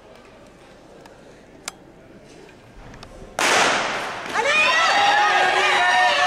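A starter's pistol fires about halfway through, a sudden sharp bang ringing out in the ice rink. Spectators break into cheering and shouting right after it as the short-track race gets under way.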